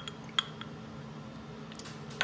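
A sharp, light clink with a brief high ring of a tablespoon and small glass shot glass being handled on a stone countertop, about half a second in, with softer taps just before and after; otherwise faint room tone.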